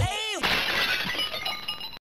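Sound effect closing the outro: a quick falling sweep, then a sudden crash about half a second in, with scattered tinkling that fades away.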